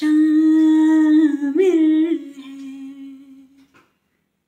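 A woman's unaccompanied voice holding the song's long closing note, with a short waver about one and a half seconds in, then fading out shortly before the end.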